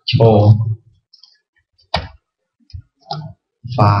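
A few scattered computer keyboard key clicks, the sharpest about two seconds in, between short stretches of speech.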